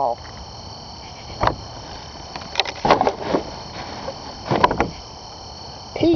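A few scattered knocks and rustles from someone handling things close to a camera that has been set down, about a second and a half in, around three seconds and near the five-second mark, over a steady faint high-pitched drone.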